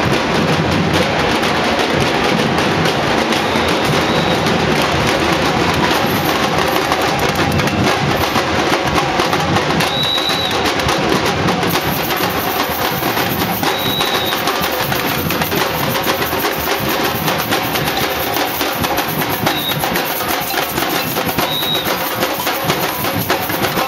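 Street percussion band drumming: a dense, steady rhythm of drums and sharp wood-block-like strikes, with a few short high-pitched notes cutting through.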